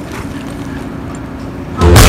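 Steady rushing wind noise on the microphone of a camera carried on a moving horse, with a faint low hum. Loud music with a heavy beat cuts in suddenly near the end.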